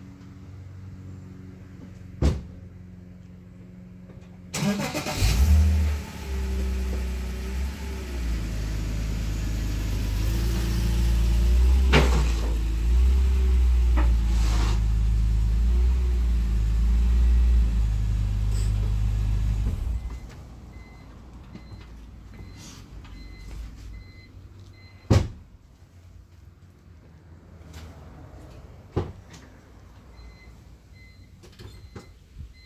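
BMW E46 330i's inline-six engine starts about five seconds in and runs at low revs as the car is driven slowly onto a low-rise lift, then shuts off about twenty seconds in. A few single sharp knocks come before and after it.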